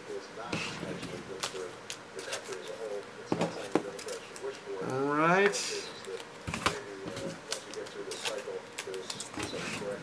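Scattered light clicks and taps with a faint, low voice. About five seconds in, a voice rises in pitch for about half a second.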